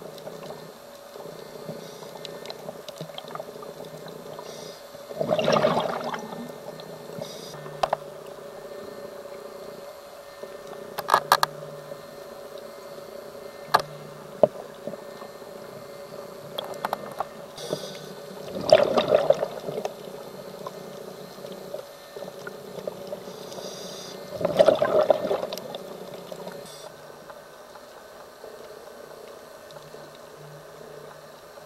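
Scuba diver breathing through a regulator underwater: three gushes of exhaled bubbles, each about a second long and several seconds apart, over a steady low hum. A few sharp clicks come between the breaths.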